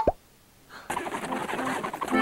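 Cartoon sound effect: a quick falling tone right at the start, cut off into a brief hush, then the cartoon's soundtrack comes back in with mixed pitched sounds about two-thirds of a second in.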